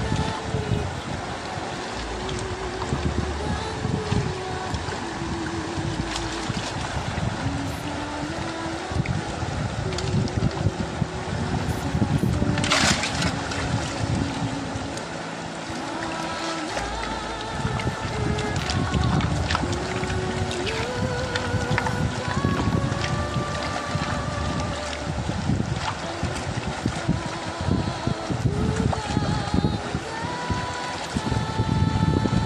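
River water sloshing as a wooden gold pan full of gravel is swirled and dipped, with wind rumbling on the microphone. A melody of background music plays over it.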